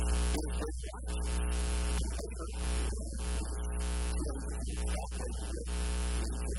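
Loud, steady electrical mains hum on the recording, with a man's voice partly buried under it.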